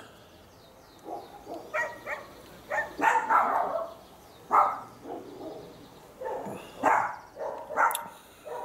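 A dog barking repeatedly, about ten short, irregular barks.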